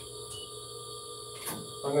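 Quiet X-ray room tone: a steady high electronic whine over faint hiss, with one brief faint beep a little way in and a soft click about a second and a half in.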